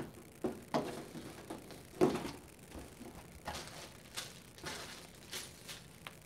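Irregular clicks, knocks and light clatter of objects being handled close by, with the loudest knock about two seconds in.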